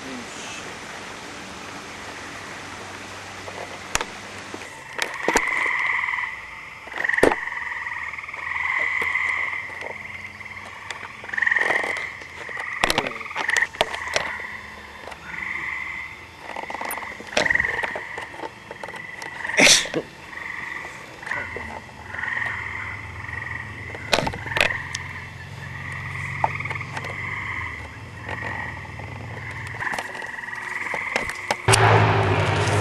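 A chorus of gray treefrogs trilling: several frogs give overlapping trills of one to two seconds each at a steady pitch, starting about five seconds in. A few sharp clicks sound among the calls.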